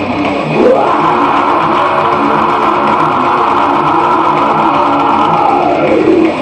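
A long held metal scream into the microphone, sliding up in pitch about half a second in, held for about five seconds and sliding back down at the end, over electric guitar.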